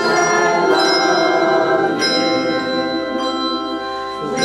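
Handbell choir ringing chords, fresh chords struck at the start, about a second in and about two seconds in, the bells ringing on between strikes and thinning near the end.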